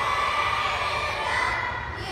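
A large group of children's voices singing and shouting together in long held notes.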